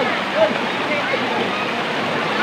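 Shallow river water rushing steadily over rocks and churning around bathers, with the distant shouts and chatter of many people over it.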